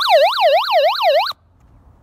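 SOS alarm siren of a hand-crank solar emergency radio, switched on with its SOS button: a loud, fast wail sweeping up and down about three times a second that cuts off suddenly about a second and a half in.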